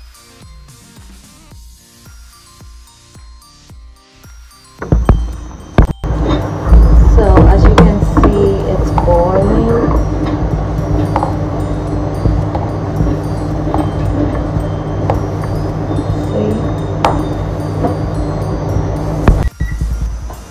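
Soft background music, then about five seconds in a loud steady low rumble begins and carries on almost to the end: a hammered aluminium saucepan of coconut cream heating on a stove burner, with a few sharp clinks from the metal ladle stirring it.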